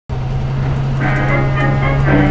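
Converted school bus's engine running steadily while driving, heard from inside the cab. Music comes in about a second in.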